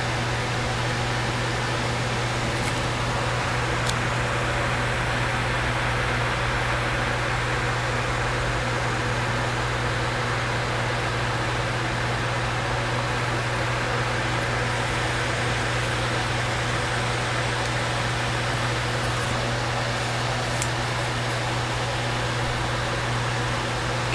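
Steady fan-like hum and hiss of room background noise, with a faint click about four seconds in and another about twenty seconds in.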